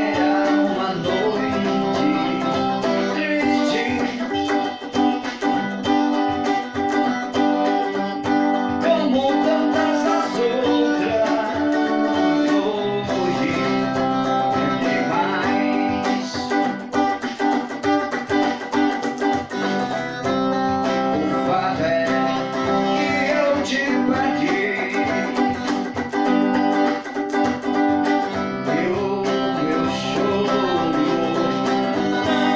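A man singing a song into a microphone while playing an electric guitar. His voice comes in phrases over steady guitar chords that change every several seconds.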